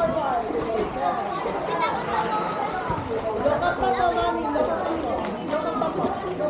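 Several people's voices chattering and calling over one another, with no clear words.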